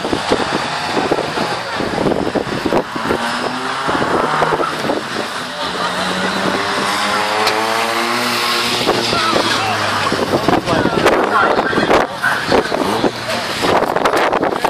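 Racing car engine running hard around the circuit, its pitch climbing and falling several times as it accelerates and changes gear, loudest in the middle.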